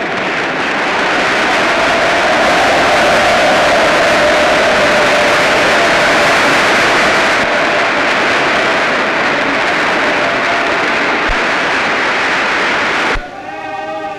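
A large audience giving a standing ovation: dense, steady applause that cuts off sharply shortly before the end.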